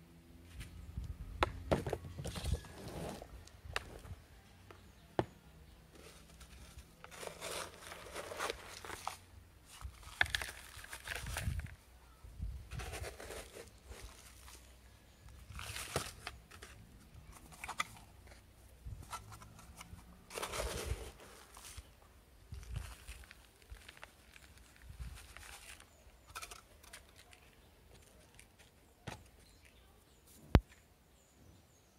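Potting substrate being scooped with a cut-off plastic bottle and poured into a pot, in a series of short gritty rustles every few seconds, with the plastic bottle crinkling and an occasional sharp click.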